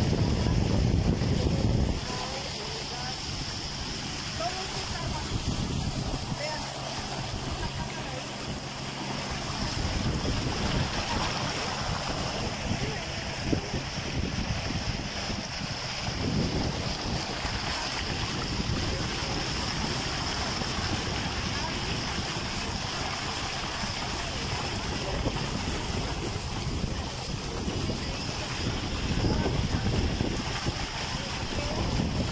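Wind buffeting the microphone over the steady running of a small boat's motor and water moving past the hull, heavier in the first two seconds and then even.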